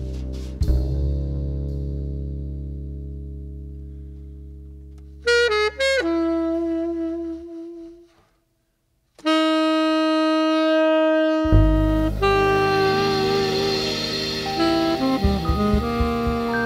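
Small jazz combo led by saxophone. A held chord with bass slowly fades under a few quick saxophone notes and a long held sax note, then breaks off into a second of silence. After another long sax note, the band comes back in with cymbals, bass and keyboard about twelve seconds in.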